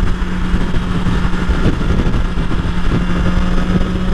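BMW S1000XR's inline-four engine running at a steady freeway cruise, one even drone that holds its pitch, under a heavy rush of wind and road noise.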